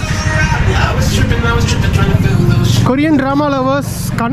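Busy city street ambience: a steady low traffic rumble under the chatter of passers-by. About three seconds in, a loud, close voice takes over.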